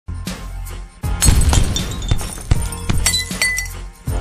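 Intro music for a news show, built on sharp hits in a beat, with a loud crashing, glass-like effect about a second in and a ringing tone near the end.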